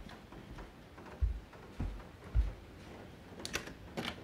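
Three soft, low thuds about half a second apart, footsteps of someone walking with the phone, then a few sharp clicks near the end.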